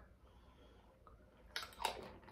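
A woman drinking from a glass bottle: very quiet sips and swallowing, then a few short breath and mouth sounds in the last half second.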